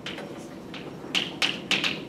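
Chalk on a blackboard as words are written by hand: faint scraping, then about four sharp taps in the second half as the letters are struck.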